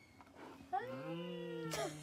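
A man's low, drawn-out "mmm" as he takes a mouthful of cake, held on one slightly arching note for about a second and a half, starting under a second in.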